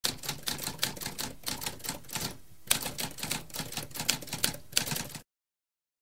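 Typewriter keys clacking in a quick, steady run of keystrokes, with a brief pause about halfway through, stopping about five seconds in.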